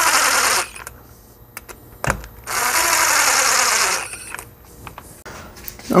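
Cordless impact driver running in two short runs as it snugs the housing screws on a supercharger bypass valve. The first run stops about half a second in, and the second runs from about two and a half to four seconds.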